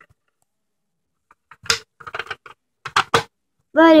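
Light plastic clicks and taps from a Barbie toy refrigerator as its doors are pushed shut: a quick run of about eight clicks, starting after about a second and a half.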